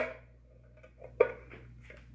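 Light handling noise from a steel timing chain cover being worked into place against the front of the engine, with one sharper clack about a second in.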